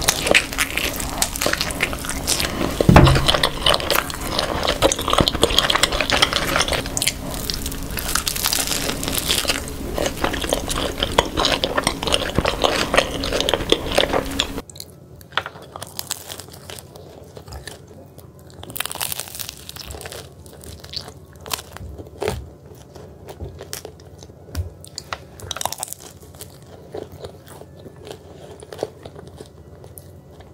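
Close-miked sounds of people biting into and chewing pizza, with a loud low thump about three seconds in. About halfway through the sound cuts abruptly to a quieter recording with sparser chewing clicks.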